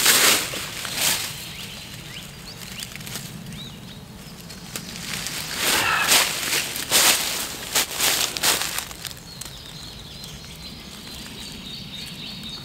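Footsteps rustling through wild garlic plants and dry leaf litter, a few irregular steps near the start and a cluster between about six and nine seconds in, with faint bird chirps in the quieter gaps.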